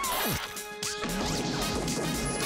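Upbeat bumper jingle with cartoon sound effects: quick sliding pitch glides and a crash-like hit over the music.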